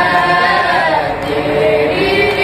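A group of men and boys chanting a noha, a Shia lament, together without instruments, in long drawn-out sung notes that slowly bend in pitch.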